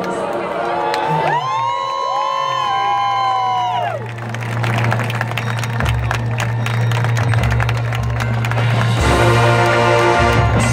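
High school marching band music with a long held low note, while the crowd in the stands cheers and shouts.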